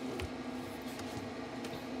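Steady hum from the Fanttik EVO 300 portable power station's cooling fan, running while the unit charges and supplies power, with a few faint clicks from hands on its plastic case.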